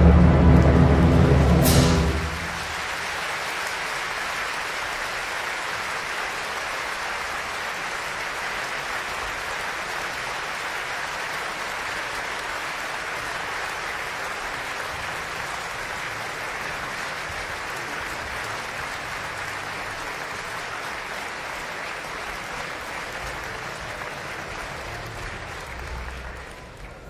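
Orchestra's closing chord, cut off about two seconds in, followed by steady audience applause.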